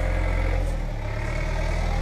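Tractor engine idling steadily with a low, even hum.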